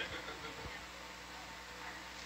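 Steady electrical hum and hiss of the ROV control room's intercom audio feed, with a faint voice trailing off right at the start.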